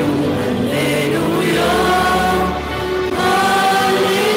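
A choir singing a slow liturgical chant in long held notes over a steady low accompaniment, with a short breath between phrases about two and a half seconds in.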